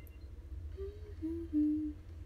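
A young woman humming with closed lips: three short notes, each a little lower than the one before, the last the longest and loudest.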